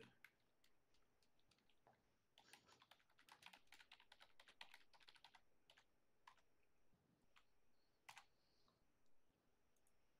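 Faint typing on a computer keyboard: a quick run of keystrokes from about two and a half to five and a half seconds in, then a few separate clicks.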